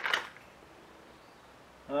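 A brief rattle of hard plastic fishing lures handled in a tackle-cabinet drawer at the very start, then quiet room tone.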